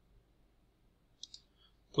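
A computer mouse click, heard as two quick ticks about a second and a quarter in, against near silence.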